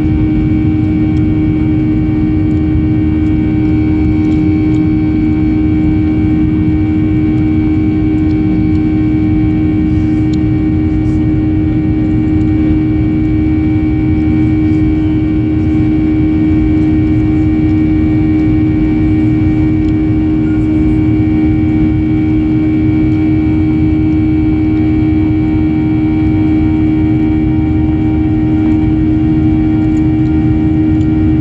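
Jet airliner's engines and airflow heard inside the cabin during the climb after takeoff: a loud, steady rumble with a strong steady hum and a fainter high whine.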